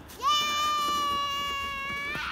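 A child's long, high-pitched yell, starting about a quarter second in and held at one steady pitch for nearly two seconds.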